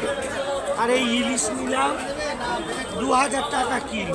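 People talking over the general chatter of a busy fish market.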